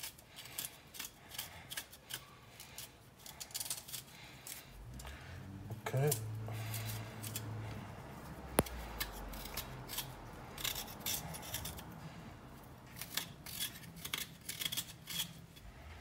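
Small knife blade scraping the skin off fresh ginger root in short, repeated strokes, with a single sharp click a little past halfway.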